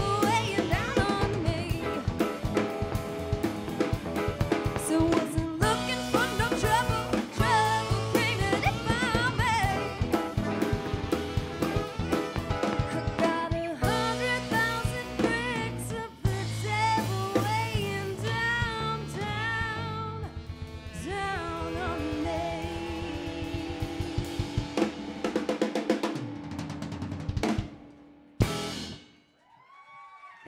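Live rock band playing: drum kit, electric guitar, bass guitar and saxophone together. Near the end the music stops, and one last hit rings out and fades.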